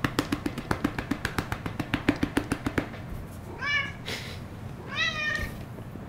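Domestic cat meowing twice, about three and a half and five seconds in, two short calls that rise and fall in pitch. Before them, a fast run of light clicks, several a second, for the first few seconds.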